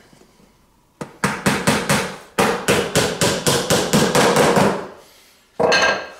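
Hammer tapping small nails into the lid of a fibreboard box, quick light strikes at about five a second with one short break. One louder knock with a brief ring follows near the end.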